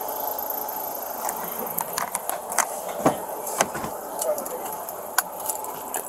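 Car door being opened and handled close to a body-worn camera: a few scattered clicks and knocks over a steady background hum.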